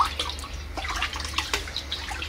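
A hand stirring pesticide into water in a plastic bucket: small, irregular splashes and sloshes.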